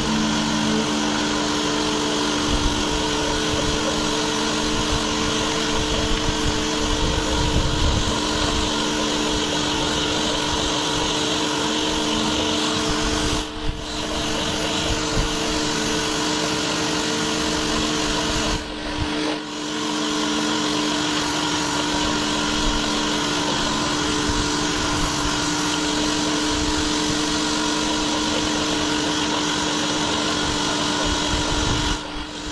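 Pressure washer running steadily, with the pump's hum under the hiss of its water jet blasting concrete through a round surface-cleaner head. The spray noise drops out briefly twice, about halfway through and again a few seconds later.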